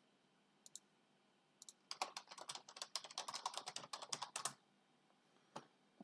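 Quiet typing on a computer keyboard: a couple of single key taps, then a fast run of keystrokes lasting about two and a half seconds, and one more tap near the end.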